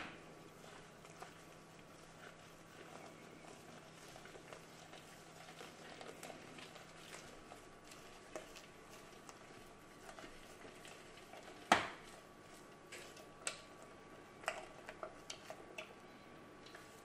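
Silicone spatula folding beaten egg whites into a soufflé base in a stainless steel saucepan: quiet soft scrapes and light taps against the pan, with one sharper knock about twelve seconds in and a few lighter ones near the end.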